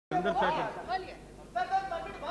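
Several men's voices talking over one another in a large assembly chamber, one calling out "no, no, please".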